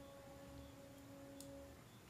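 Near silence, with the faint fading tail of one held note from soft background music; it dies away near the end.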